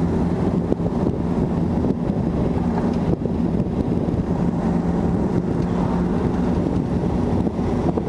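1955 Nash Metropolitan's small Austin four-cylinder engine running steadily at about 45 mph on the road, with tyre and road noise and wind buffeting the microphone.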